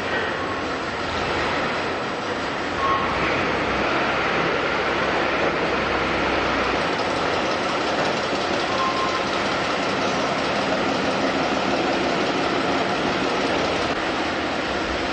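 Steady, dense machinery din of a factory assembly floor, with two short faint tones about three seconds and nine seconds in.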